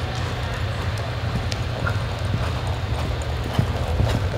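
A horse's hoofbeats as it lopes on soft arena dirt, over a steady low rumble.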